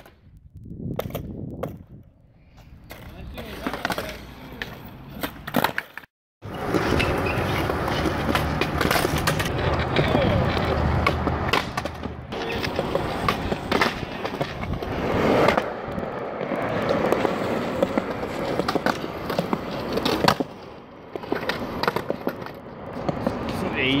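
Skateboards rolling over asphalt and concrete, with many sharp clacks of decks popping and hitting the ground. The sound cuts out briefly about six seconds in.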